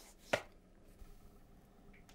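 A single sharp click about a third of a second in, over faint room tone.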